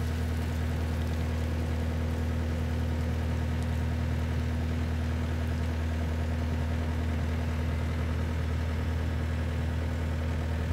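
Takeuchi TCR50 tracked carrier dumper's diesel engine running steadily at a low, even pitch while the raised dump bed slews round on its turntable.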